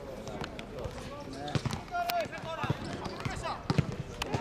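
Footballers shouting and calling to one another during play, with several sharp thuds of the ball being kicked, more of them near the end.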